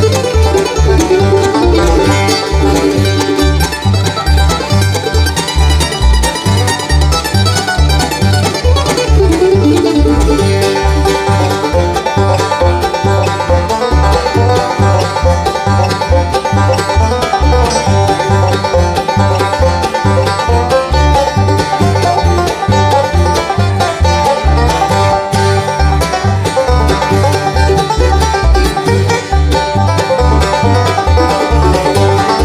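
A bluegrass band playing an instrumental live: banjo, acoustic guitar, mandolin and fiddle over an upright bass walking a steady beat.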